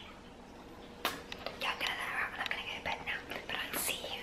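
A woman whispering close to the microphone, starting about a second in after a quiet moment.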